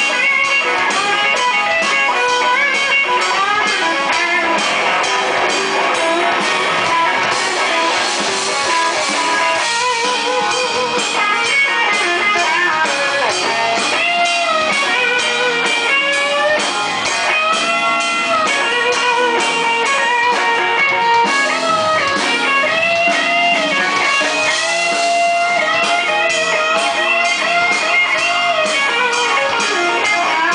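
Live blues band playing: an electric guitar leads with bent, gliding notes over drums and bass guitar.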